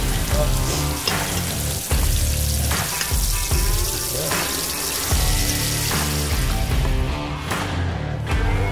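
Hot oil sizzling as breaded dill pickles deep-fry in a basket in a pot of oil, with background music playing over it.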